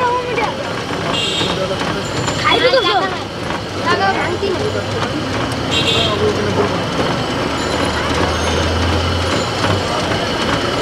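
Busy roadside street noise: passing traffic and people's voices. A low drone swells over the last few seconds and cuts off just before the end.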